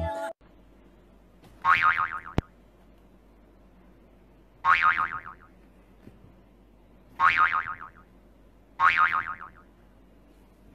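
A cartoon "boing" sound effect played four times, a few seconds apart, each lasting under a second, with one sharp click just after the first.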